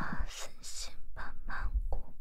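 A woman's breathy mouth sounds: a run of about five short puffs and whisper-like bursts of breath.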